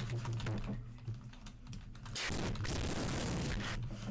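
Computer keyboard being typed on: a fast run of key clicks over a low steady hum.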